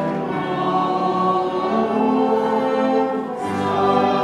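A hymn sung by many voices, accompanied by piano, violin and trumpet, in long held notes. A new line starts near the end.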